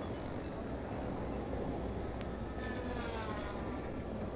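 Steady rumble of road traffic, a busy noisy wash with faint rising and falling tones over it.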